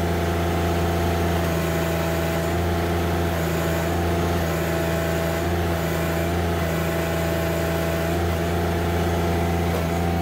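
John Deere sub-compact tractor's three-cylinder diesel running steadily under load, with the loader hydraulics held against the relief valve so the pump works at full pressure.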